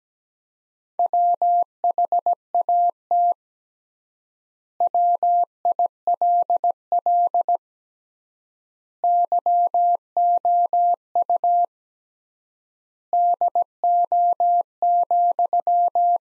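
Morse code sidetone, a single steady beep of about 700 Hz keyed in dots and dashes at 17 words per minute, repeating the sentence "What will you do, then?". The letters come in clusters with long pauses of about one and a half seconds between the words, from the extra-wide word spacing.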